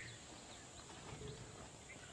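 Faint outdoor background noise with a few short, faint high chirps.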